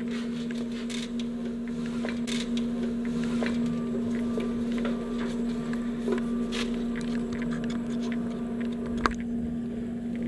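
A steady low hum, one pitch with a few overtones, with scattered light clicks and a sharper click about nine seconds in.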